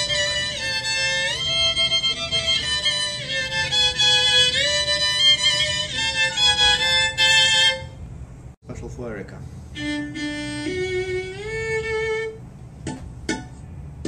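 A fiddle playing a melody of sustained notes that slide from one pitch to the next. About eight seconds in it breaks off suddenly, and a quieter passage follows with a few held notes stepping upward and some sharp clicks.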